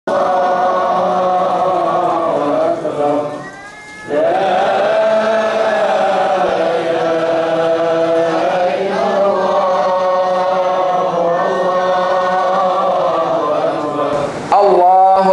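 Vocal chanting in long, drawn-out held notes, breaking off briefly about three and a half seconds in before carrying on.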